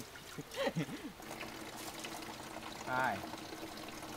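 Water pouring and trickling from a cooking pot, with brief voice sounds about half a second in and again around three seconds.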